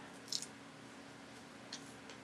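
A short crinkle of a sheet of foam adhesive dimensionals being handled about a third of a second in, then a faint tick near the end, over low room hum.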